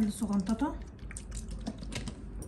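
Vinegar poured from a plastic bottle onto raw chicken breasts in a plastic bowl, a thin stream trickling onto the meat, followed by a few faint clicks.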